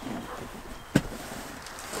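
A single sharp click or knock about a second in, over faint background noise.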